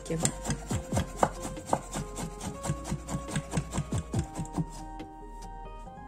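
Kitchen knife slicing ham into thin strips on an end-grain wooden cutting board, the blade knocking the board in quick, even strokes about four to five a second, stopping about five seconds in.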